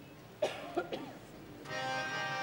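A cough about half a second in, followed by a second short one. Near the end the accompanying instruments start up, holding a sustained chord.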